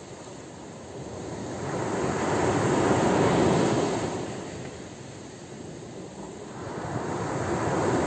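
Ocean surf: a wave rushes in and swells to a peak about three seconds in, drains away, and a second wave builds near the end.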